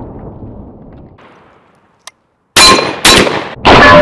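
The echo of a 12 gauge shotgun shot dies away, then a J.C. Higgins Model 60 semi-automatic 12 gauge shotgun fires three quick shots about half a second apart. Steel targets ring after the shots.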